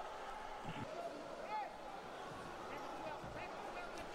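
Faint indoor futsal arena ambience: distant voices of players and crowd, with a few short high squeaks and the odd ball knock on the court.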